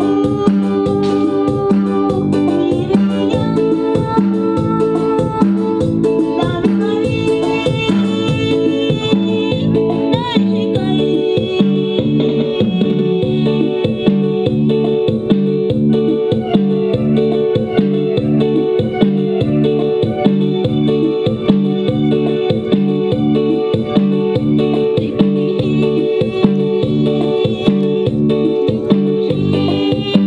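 A live band playing instrumental Mixtec dance music, led by a Yamaha PSR-S950 arranger keyboard, with a steady, even beat.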